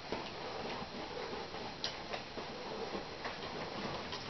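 Paintbrush dabbing and scrubbing paint onto a canvas: a soft, scratchy rubbing broken by irregular light taps as the bristles strike the surface.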